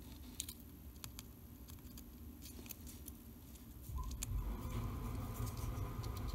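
Faint, scattered small clicks and taps of metal tweezers picking up and placing tiny miniature pieces, with a low rumble of handling noise from about four seconds in.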